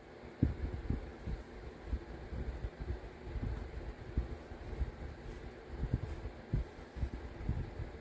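A diamond-cut carbide burr rolled and pressed by hand across a patch of modelling clay on a paper pad, imprinting a diamond texture. It makes soft, irregular low bumps and rubbing over a faint steady background hum.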